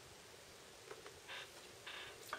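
Near silence: room tone, with a few faint, short rustles about halfway through.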